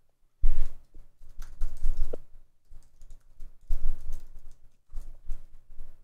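Typing on a computer keyboard: several quick bursts of keystrokes separated by short pauses, as a line of code is entered.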